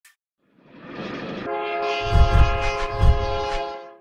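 Train sound effect: a rushing rumble builds, then a multi-note train horn chord sounds from about a second and a half in, over heavy low thumps, and fades out just before the end.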